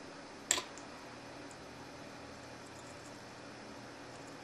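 Faint steady room hiss, with one brief sharp sound about half a second in.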